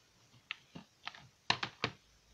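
Plastic DVD cases clicking as they are handled and set on a stack: a few light clicks, then three sharper clacks in quick succession about one and a half seconds in.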